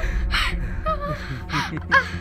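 A woman gasping and crying out in short, strained bursts as she struggles in water, with two sharp gasps about a second apart, over water splashing.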